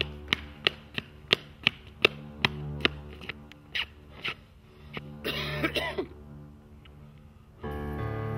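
Running footsteps slapping on an asphalt road, about three a second, thinning out and stopping about four seconds in. A man then gasps hoarsely for breath, winded from the run. Low film-score music plays underneath and swells near the end.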